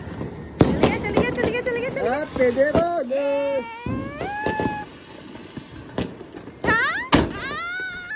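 Diwali firecrackers going off: sharp bangs about half a second in and again around six and seven seconds, with crackling in between. Rising and falling wails, from voices or whistling fireworks, come between the bangs.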